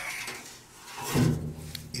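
Steel sheet of a sauna stove's stone compartment scraping and grating as the piece, cut free on four sides, is wiggled by hand; it is loose but still held.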